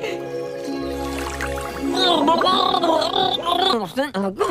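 Held music notes, then from about halfway through a man's voice babbling unintelligibly through a mouthful of food, with a gargling quality.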